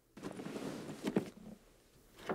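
Faint room noise with a short, soft sound a little after a second in.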